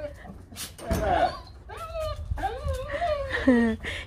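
Golden retriever whining and whimpering, several drawn-out rising and falling whines, the loudest near the end. There is a low thump about a second in.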